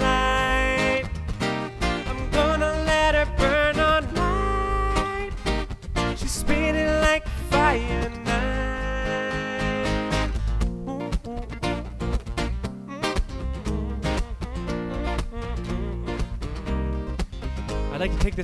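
Live acoustic band playing an upbeat song: a male voice singing over strummed steel-string acoustic guitar, twelve-string guitar and bass guitar.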